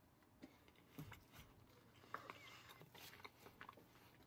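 Faint, soft chewing of an untoasted bread-strip toy 'french fry' topped with vanilla pudding, with a few small mouth clicks scattered through it.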